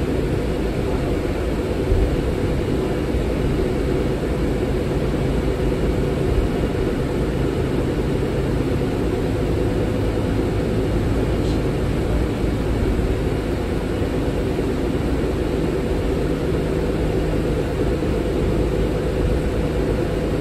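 Steady drone of a 2022 New Flyer XD40 transit bus's Cummins L9 diesel engine and drivetrain, heard from inside the passenger cabin, with an even low hum that does not change.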